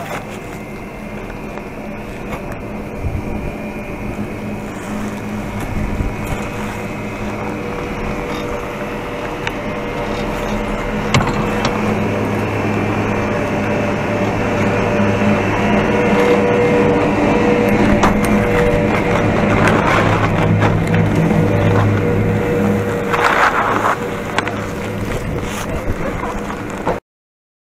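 Chairlift top-station machinery running: a steady mechanical hum with several fixed tones that grows louder as the chair passes under the station and its bull wheel. A short rushing noise follows near the end as skis slide off onto the snow.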